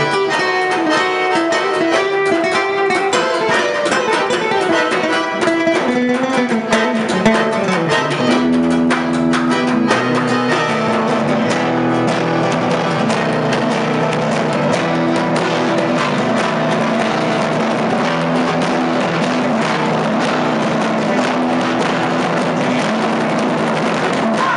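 Live instrumental band music: a nylon-string acoustic guitar plays quick plucked runs, with accordion and light percussion. About eight seconds in, the sound thickens into steady held chords.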